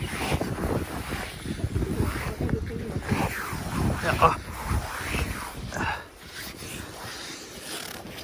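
Wind buffeting the microphone in gusts, a low rumble for most of the first six seconds that then eases off.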